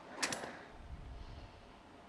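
A few faint, sharp clicks and taps, the clearest a quick pair about a quarter second in, over a faint low rumble.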